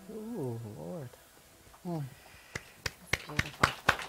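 Short sliding vocal exclamations, then a few people clapping unevenly from about two and a half seconds in.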